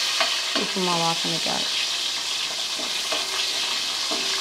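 Food frying and sizzling in oil in a large pot on a gas stove, with the scrape of a metal spatula stirring it. The sizzle is a steady hiss.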